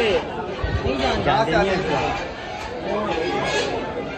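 Men talking, their voices overlapping in chatter, with no clear sound other than speech.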